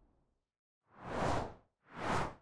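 Whoosh sound effects of an animated logo outro: a smooth swell that rises and falls over most of a second about halfway through, then a second whoosh starting just before the end.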